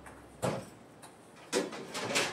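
Kitchen drawer being opened and rummaged through in search of a cheese grater: a knock about half a second in, then rattling near the end.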